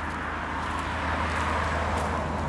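Road traffic: a steady rush of passing-vehicle noise that swells slightly in the second second, over a low hum.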